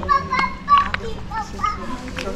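Children's high-pitched voices calling and chattering in the background, with a few short sharp clicks.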